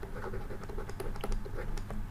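A stylus scratching on a writing tablet in short, irregular strokes as a word is handwritten.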